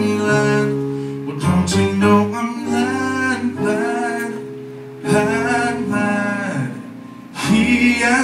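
A man singing a gospel song in phrases, accompanied by steady held chords on a Yamaha keyboard, with short breaks between phrases about five seconds in and again near the end.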